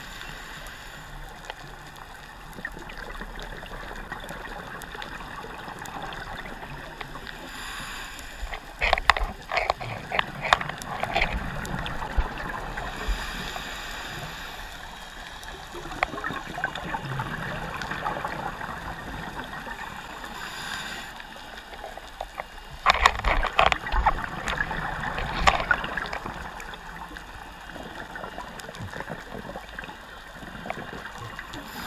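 Underwater bubbling and hiss of scuba breathing: a steady hiss with two loud bursts of crackling exhaust bubbles from a scuba regulator, one about a third of the way in and another past three-quarters of the way.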